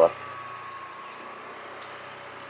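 Steady low background hum with a faint thin tone held above it, with no distinct events.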